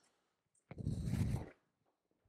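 Ear muffs being pulled on over the head: a short rustle and rub of the cups and headband against hair and collar, under a second long, about halfway through.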